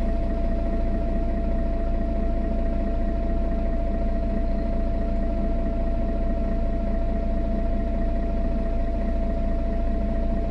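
Mercedes-Benz Citaro O530G articulated bus's OM457hLA straight-six diesel idling steadily, heard from inside the passenger cabin. A steady low rumble with a constant tone above it, unchanging throughout.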